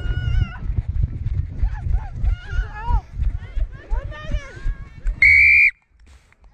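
A referee's whistle gives one short, loud, steady blast about five seconds in. Before it there is a rumble of wind and footfalls from the running referee's chest camera, under distant shouts from players and the sideline.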